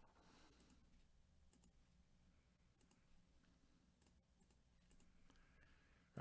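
Near silence: faint room tone with a few scattered, quiet clicks of a computer mouse.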